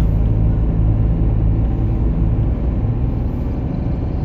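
Truck's diesel engine running, heard from inside the cab: a steady low drone as the truck rolls slowly, easing off a little about two-thirds of the way in.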